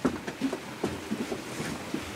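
Low, steady room noise with a few faint clicks and brief snatches of distant talk.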